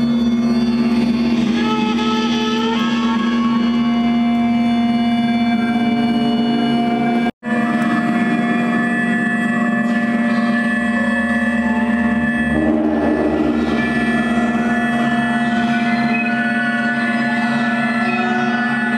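Drone music in D: a dense, steady bed of long held tones from electric guitar run through effects pedals, with trumpet, layered into a sustained drone. The sound cuts out completely for an instant about seven seconds in, then the drone carries on.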